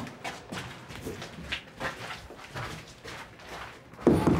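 Footsteps on a hard set floor, a steady walking pace of about two to three steps a second.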